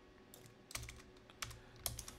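A few faint, separate computer keyboard keystrokes, as a line of code is deleted and a notebook cell is run.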